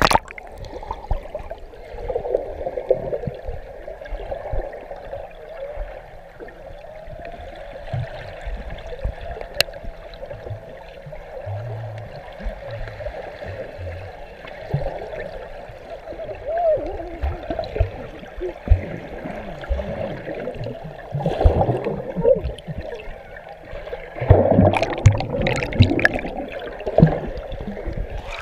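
Muffled bubbling and gurgling of pool water heard through a camera held underwater, with louder splashing bursts about 21 seconds in and again from about 24 to 26 seconds.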